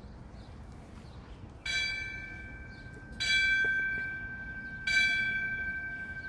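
A bell struck three times, about a second and a half apart, each stroke ringing on and fading, tolled for departed firefighters at a fire department memorial service.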